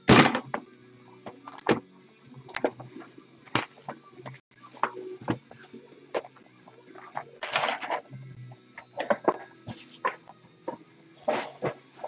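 Hands opening a shrink-wrapped box of trading cards: the plastic wrap crinkles in a few short stretches, and the foil card packs are taken out and stacked on a wooden desk with a string of light taps and knocks.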